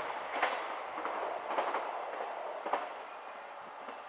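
A train moving away after passing, its wheels clacking over rail joints about once a second as the running noise fades.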